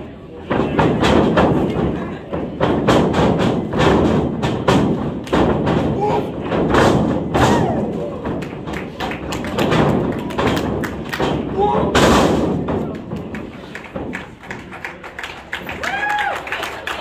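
A pro-wrestling match in the ring: a long run of hard thuds and slaps, many strikes a second at times, as wrestlers hit each other and land on the ring mat, with voices shouting among them.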